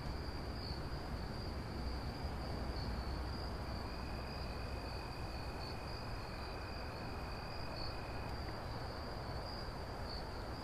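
A steady, high-pitched insect trill, with a fainter, lower tone joining for a few seconds in the middle, over a low rumble.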